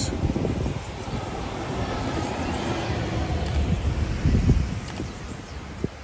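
Bus driving past on the road, its engine and tyre noise swelling and fading, with wind buffeting the microphone and a strong gust about four and a half seconds in.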